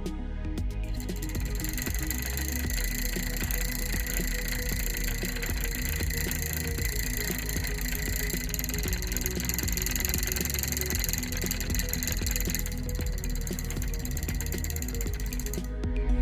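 Homemade DC motor with a copper-wound wine-cork rotor, spinning on a 9-volt battery: a fast, steady rattle of its copper-wire brushes clicking against the turning shaft's contacts. It starts about a second in and stops suddenly just before the end.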